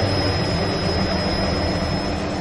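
Helicopter sound effect: the engine running with a steady high turbine whine over a low rumble.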